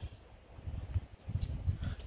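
Strong wind buffeting the microphone: irregular low rumbling gusts.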